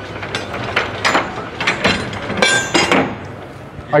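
A boat's bow anchor and its chain clinking and rattling in a run of irregular clicks and knocks as the anchor is drawn back up into the bow, with exhibition-hall chatter behind.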